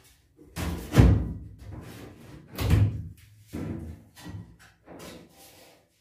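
Loose sheet-steel bed bulkhead panel being pushed and knocked into place against the pickup's cab: two loud clunks, about a second in and near the middle, then a few lighter knocks.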